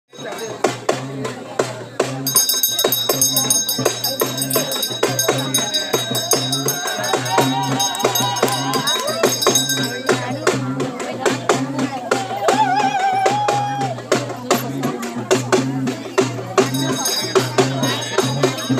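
Traditional festival music with a steady drumbeat and jingling tambourine-like percussion, and a wavering melody line over it in places.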